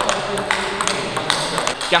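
Table tennis rally: the ball clicking sharply off the bats and bouncing on the table, roughly three clicks a second at an uneven pace.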